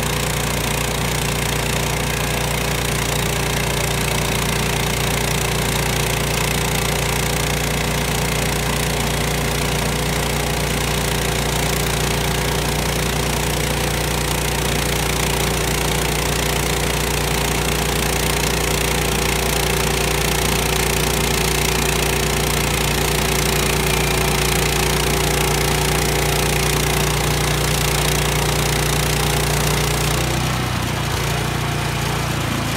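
Woodland Mills portable band sawmill's engine running steadily under load while its band blade saws lengthwise through a squared log.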